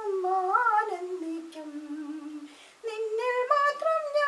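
A high voice singing a Malayalam Christian hymn unaccompanied, the melody gliding downward, breaking off briefly about two and a half seconds in, then picking up again.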